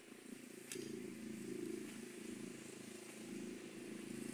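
Faint steady low hum of an engine running in the background, with a light click about a second in.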